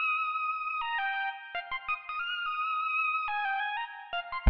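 Filtered sawtooth synth lead from a beat playing back in Logic Pro, with sustained chords that change every second or so and no bass or drums yet. It is the intro of an experimental beat built on a contemporary R&B chord progression.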